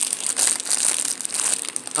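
Plastic snack cake wrapper crinkling as it is handled and opened, a dense crackle of plastic.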